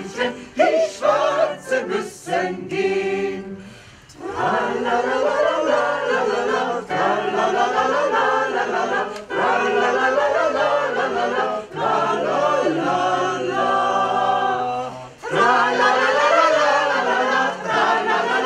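Small mixed amateur choir of men and women singing a cappella in unison. Short phrases fill the first few seconds; after a brief dip about four seconds in, the singing runs on, with another short break near fifteen seconds.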